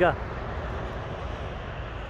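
Steady low rumble of distant traffic, with the last of a man's word at the very start.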